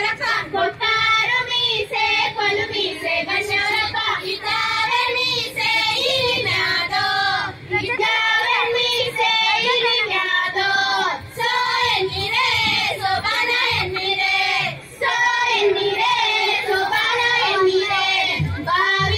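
Women singing a Kannada folk song in high voices, the melody running on with brief breaks between phrases.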